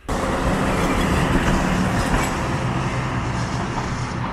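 Loud, steady street traffic noise, starting abruptly.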